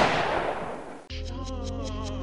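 A single loud blast sound effect, the tail of a shot or explosion, dying away over about a second. Then a rap beat kicks in with a deep bass and regular hi-hat ticks.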